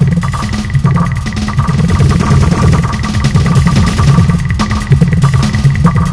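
Roland MC-808 groovebox playing a heavily tweaked hip-hop preset: a dense, pulsing low synth bass under a repeating beat of sharp clicks, with thin steady high tones on top.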